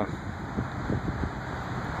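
Wind on the microphone: an uneven low rumble with a few faint ticks.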